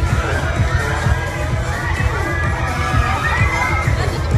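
A crowd of riders screaming on a swinging pendulum thrill ride, with many overlapping high screams that rise and fall, over loud bass-heavy music.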